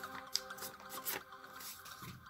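A sheet of A4 paper being handled and folded: a sharp crackle about a third of a second in and a brief swish about a second in, over soft background music that thins out toward the end.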